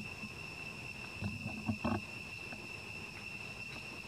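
Steady high-pitched insect drone in the forest, one even tone with a fainter higher one above it. A few soft low knocks and rustles come between about one and two seconds in.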